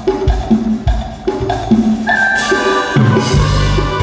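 Live dance band music: a quick, steady drum beat under moving bass notes, with a sustained melody line coming in about two seconds in.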